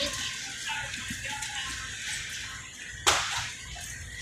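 Restaurant background: faint music and distant voices, with a sudden short burst of noise about three seconds in that dies away within about half a second.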